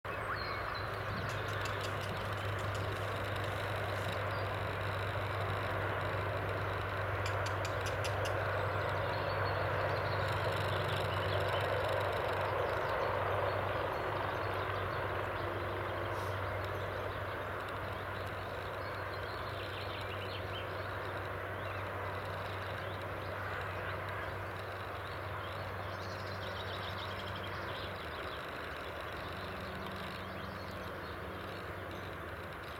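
Steady outdoor background noise with a low hum, slowly easing off, and a few faint high ticks that come and go.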